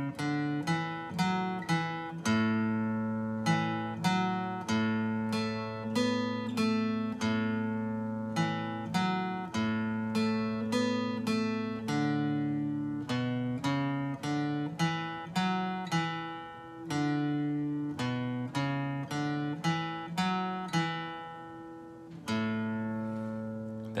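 Acoustic guitar in standard tuning, played with a pick: a single-note bass-line riff on the low A and D strings, open and at frets two and four, repeated over and over. The notes come in a steady rhythm, with some left ringing longer.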